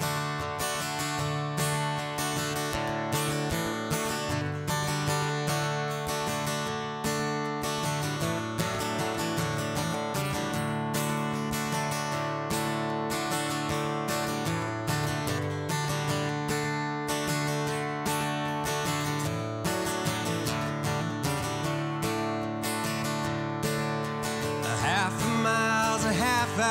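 Steel-string acoustic guitar strummed in a steady rhythm through an instrumental break of a country-folk song. Singing comes back in near the end.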